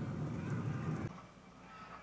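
A distant army of men yelling, a low rumbling crowd din from the show's soundtrack, which cuts off suddenly about a second in.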